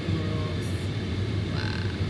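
Steady low rumble of a car in motion heard from inside the cabin, with faint brief vocal sounds from the occupants.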